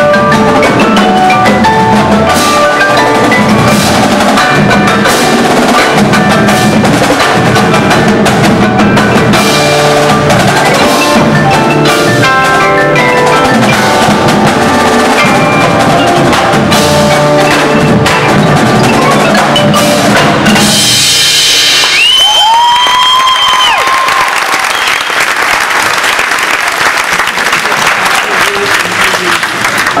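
Marching percussion ensemble playing: snare, tenor and bass drums with marimbas and other mallet keyboards in a dense, fast passage. About two-thirds of the way in, the drumming gives way to a loud crash, a tone that slides up, holds and slides back down, and then a sustained wash of sound that eases off slightly near the end.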